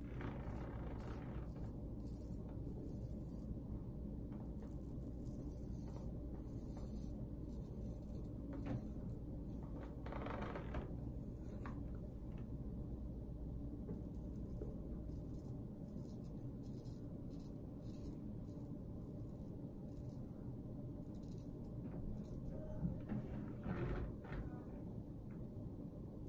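Cardinham Killigrew shavette blade scraping through lathered stubble in short, light strokes, over a steady low room hum.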